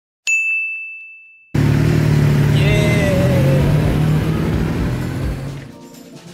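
A single ding with a high ringing tone that fades over about a second. Then a large V-twin touring motorcycle's engine comes in suddenly with a steady, low, loud running sound as it rides past, fading toward the end.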